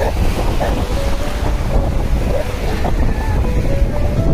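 Sea surf breaking and washing in the shallows, with wind buffeting the microphone as a steady low rumble.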